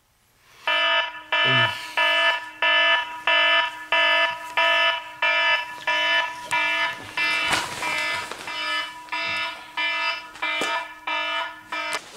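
Smartphone alarm going off: a loud electronic beep repeating a little under twice a second, which stops just before the end.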